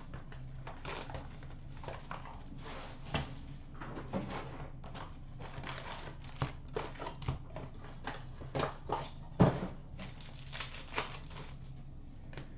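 Shrink wrap crinkling and tearing as a sealed hobby box of trading cards is cut open and its packs handled, with irregular crackles and light taps and one louder knock about halfway through.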